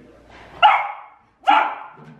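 A dog barking twice, two short sharp barks about a second apart.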